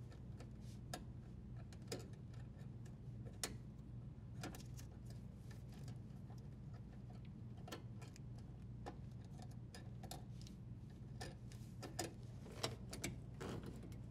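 Faint, irregular small clicks and ticks of stiff copper power wires and plastic wire nuts being handled and pulled apart in a dishwasher's metal junction box, over a low steady hum. The clicks come a little more often near the end.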